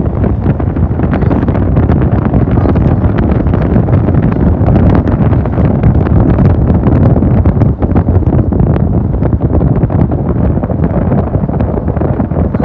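Loud wind buffeting the microphone of a camera filming from a moving vehicle, a steady low rumble with constant crackling gusts and road noise beneath it.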